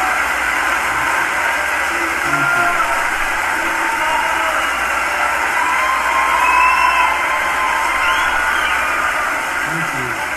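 Large audience applauding and cheering steadily, with scattered whoops and shouts rising out of the crowd noise.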